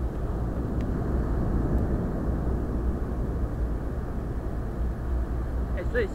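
Steady wind rumble on the microphone of a camera lying on a beach, mixed with the hiss of distant surf.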